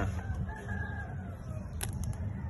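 A rooster crowing faintly in one drawn-out call that rises and falls, over a steady low rumble, with a sharp click near the end.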